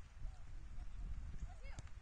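Faint, distant shouts and calls from players on a soccer field over a low, uneven rumble, with one sharp knock near the end.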